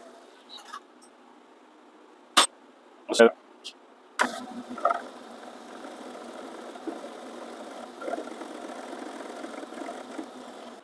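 A few sharp clicks and knocks, then a metal lathe is switched on about four seconds in and runs with a steady hum.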